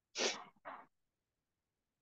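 Two quick, sharp bursts of breath from a person, the first louder, both within the first second.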